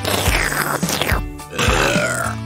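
Cartoon sound effect of someone drinking from a can, then spluttering and spitting the drink out near the end, over background music with a steady beat.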